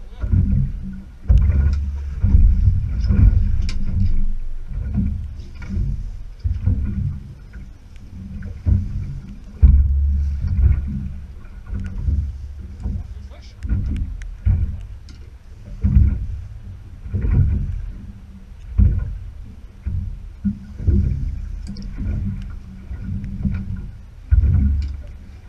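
Water slapping and sloshing against a small boat's hull as it rocks in a choppy sea, in irregular low surges every second or two, with rumbling buffeting on the microphone.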